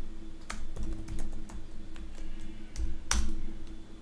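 Typing on a computer keyboard: a quick, irregular run of key clicks, with one harder keystroke about three seconds in.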